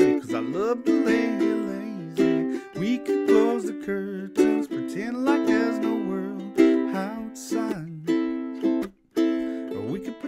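Ukulele strummed in a steady rhythm, accompanying a man's singing voice. The playing stops for a moment near the end, then picks up again.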